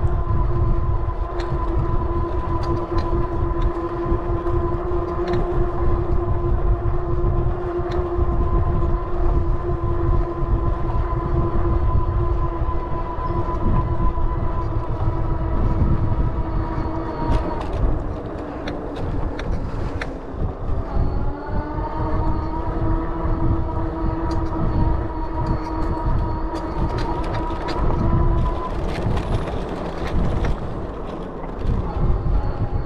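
Steady whine of an electric bike's motor over wind rumble on the microphone. The whine drops in pitch a little past halfway and climbs back up a few seconds later as the bike slows and picks up speed again.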